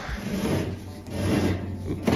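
Rubbing and scraping as a tow-behind lawn sweeper's hopper is tipped on its pivots by pulling its dump rope, in two swells.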